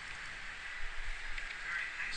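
Steady faint background hiss with a few soft clicks about a second in.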